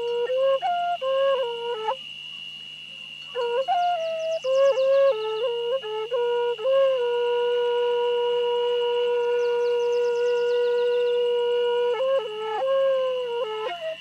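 Hmong raj nplaim, a bamboo free-reed flute, played in short melodic phrases with a pause about two seconds in. About halfway through it holds one long note for some five seconds, then plays a closing phrase that stops just before the end.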